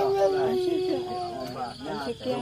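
A long, steady howl held for nearly two seconds, with people talking over it.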